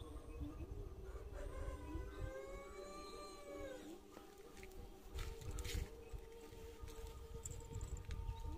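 Faint, distant animal call: one long drawn-out call of about two seconds near the middle, rising slightly and then falling away, over a low rumble of wind on the microphone.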